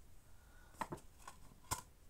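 A few faint clicks and knocks of plastic DVD cases being handled and put back, the sharpest near the end.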